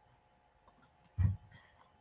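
Quiet room tone with a faint steady hum, broken by one short, low sound a little past a second in.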